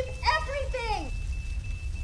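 A woman's voice shouting "evacuate" in the first second, then a faint, steady high tone over a low hum.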